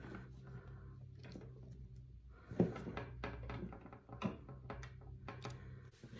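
Faint clicks and rustles of thin florist wire being twisted tight around the taped ends of a metal wire wreath frame, with a sharper tap a little over two seconds in, over a steady low hum.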